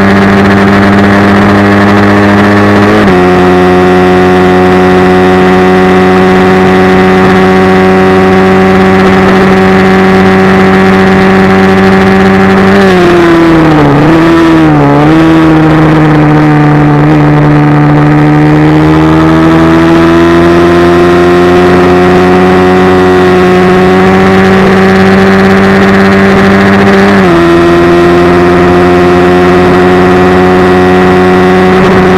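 Onboard engine sound of a Suzuki GSX-R 250 sport bike at speed on a race track. It holds high revs, drops pitch with a gearshift about three seconds in, and falls away with a few quick blips around the middle as the bike slows for a corner. It then climbs steadily in pitch and shifts again near the end.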